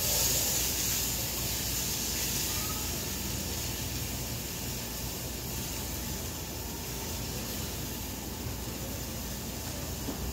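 A steady hiss of background noise with no distinct events, a little stronger in the first second or two.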